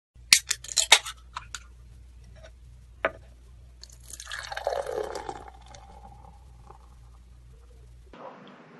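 A quick run of sharp clinks, one more clink about three seconds in, then liquid pouring for about a second and a half, over a faint steady low hum.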